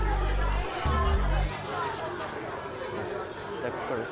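Voices of people chatting over music, with a heavy bass line that stops about a second and a half in.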